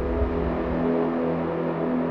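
Background music: a sustained low chord held steadily over a deep bass rumble.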